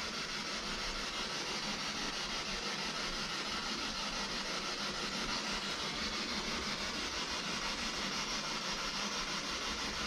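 Steady hiss of static from a radio-frequency scanning device (spirit box) running, at an even level.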